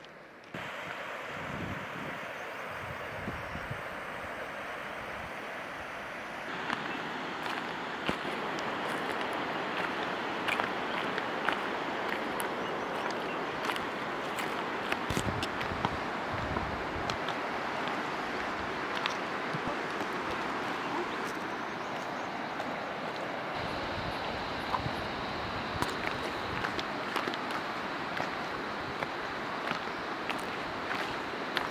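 Steady rushing of wind buffeting an unshielded microphone, with scattered faint clicks; it gets louder about six seconds in and changes character again near 23 seconds.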